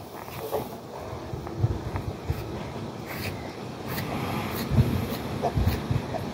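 A pony pulling and chewing hay from a haynet, with scattered crackling rustles and irregular dull low thumps.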